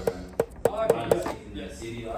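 Yamaha YAS-62 alto saxophone keys pressed down by hand, about five sharp clicks of the pads closing on the tone holes in the first second or so. The key work has been freshly seated and regulated.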